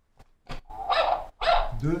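A tabletop quiz buzzer is pressed and sounds three short, bark-like blasts about half a second in. A man then answers "Deux" near the end.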